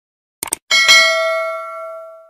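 Subscribe-animation sound effects: a quick double mouse click, then a notification bell ding that rings out and fades over about a second and a half.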